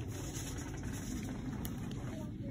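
Steady low rumble of room background noise, with two faint small clicks near the end.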